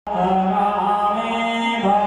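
Male Hindu priest chanting mantras into a microphone, the voice held on long steady notes with a small change of pitch near the end.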